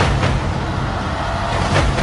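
A loud, steady low rumble with a hiss of noise above it and a soft rush of sound near the end.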